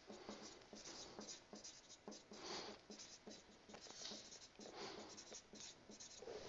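Marker pen writing on a whiteboard: faint, quick strokes of the felt tip against the board as letters are formed, with a few longer drawn strokes.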